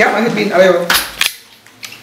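A sharp clack of tableware on a table about a second in, with a few spoken words around it.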